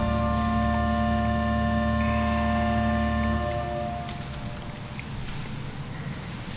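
Pipe organ holding a full chord with a low bass note, released about three and a half seconds in. The sound dies away in the church's long reverberation into faint room noise.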